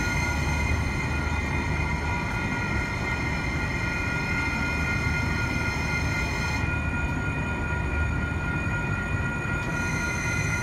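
Metro Transit light-rail train at the platform, giving a steady low rumble overlaid with several constant high-pitched whining tones that neither rise nor fall.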